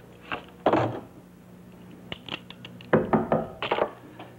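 A telephone handset set down on its cradle with a thunk, then a quick series of knocks on a door near the end.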